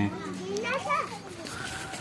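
A young child's high-pitched voice, faint and brief, about half a second to a second in.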